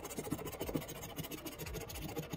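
A coin-like chip is scratched rapidly back and forth across a scratch-off lottery ticket, rubbing off the coating in quick, even strokes.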